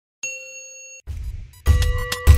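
A single bright bell ding sound effect, a notification-bell chime that rings steadily and is cut off after under a second. A low rumbling hit follows, and then a bass-heavy music sting starts near the end.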